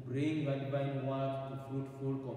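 A priest chanting a liturgical prayer in a man's voice, held on a nearly level pitch in long drawn-out tones.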